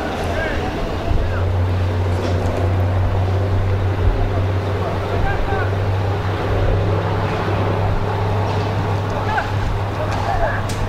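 A steady low hum and rumble runs throughout, with faint short shouts and calls from players on the training pitch now and then.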